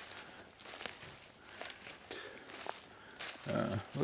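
Footsteps through dry fallen leaves and forest undergrowth, a string of soft irregular rustles and crunches.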